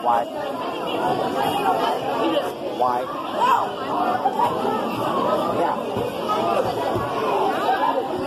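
Background chatter: several people talking at once, no single voice clear, in a large echoing room.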